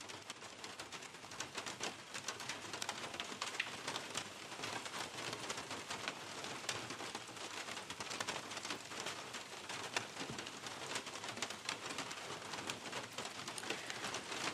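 Steady rain pattering, a dense run of fine drop ticks that comes up gradually in the first couple of seconds and then holds even.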